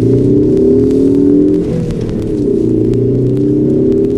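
A car engine heard from inside the cabin, revs climbing, briefly falling about a second and a half in as the driver shifts gear, then pulling steadily again.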